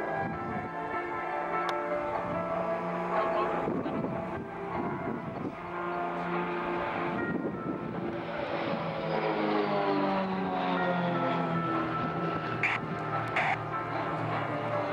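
Display music plays loudly, mixed with the engine drone of four propeller aerobatic planes flying in formation overhead. In the second half the engine note falls slowly as they pass.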